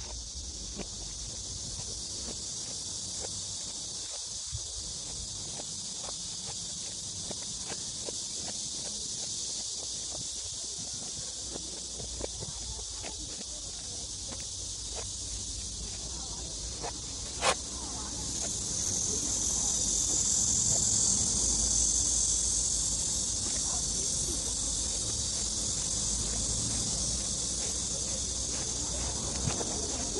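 A steady, high-pitched insect chorus, growing louder a little past the middle, with faint scattered ticks and one sharp click just before it swells.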